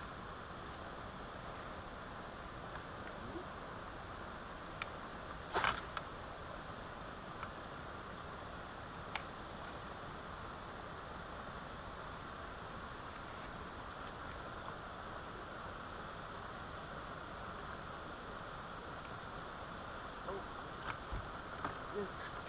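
Quiet, steady outdoor background noise with a few light clicks scattered through it and one brief louder noise about five and a half seconds in.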